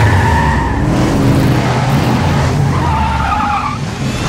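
Mercury Cougar's V8 engine rumbling, with its tyres squealing twice: once at the start and again near the end.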